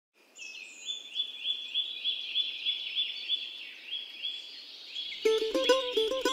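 A bird repeats short rising whistled notes, about three a second, over faint background noise. About five seconds in, plucked-string music starts.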